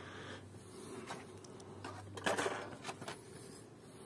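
Faint rustling and a few light taps from the packaging of an Elring intake manifold gasket being handled and turned over, with a low steady hum underneath.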